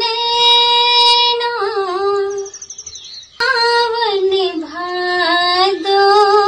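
A woman singing a Hindi song alone, in a high voice with long held, wavering notes. There is a short break about two and a half seconds in before she goes on singing.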